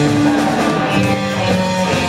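Live rock band playing an instrumental passage: guitars, electric bass and drum kit together, with held notes changing steadily.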